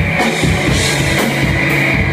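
Live rock band playing loud: a Pearl drum kit keeping a steady beat with sharp snare or cymbal strokes about twice a second, over electric bass guitar.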